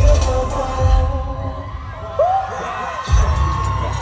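Live concert sound system playing a heavy, throbbing bass beat that drops out briefly about three seconds in, with voices gliding in pitch over it in the second half.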